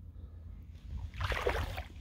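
Water sloshing and splashing around the legs of a person wading through shallow water, over a low rumble. The sloshing grows louder about a second in and dies down near the end.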